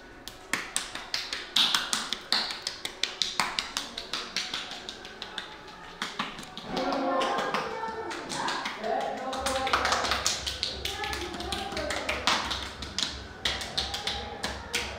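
A quick, irregular run of sharp taps or clicks, several a second, with people talking in the middle part and a low hum coming in partway through.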